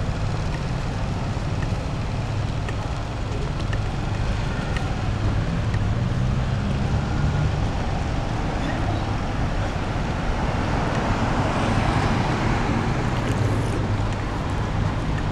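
Night street traffic: a steady low rumble, with a car passing close by that swells to its loudest about twelve seconds in and eases off near the end.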